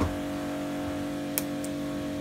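Steady background hum holding a few fixed tones, with a soft knock at the start and a faint tick about one and a half seconds in.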